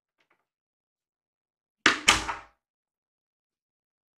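A room door being shut: two sharp knocks in quick succession about two seconds in, dying away within half a second.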